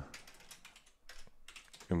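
Computer keyboard being typed on: a run of light, irregular key clicks as a short word is corrected and retyped.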